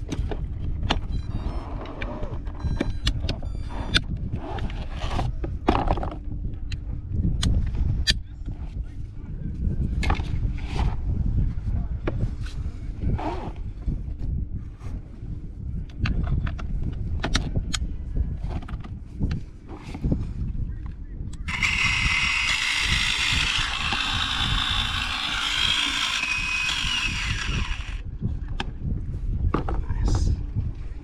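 Wind buffeting the microphone, with a string of clicks and clacks as a battery is clipped onto a Nemo cordless underwater hull cleaner and a brush head is snapped onto its hex chuck. About two-thirds of the way through, a steady whirring hiss lasts about six seconds.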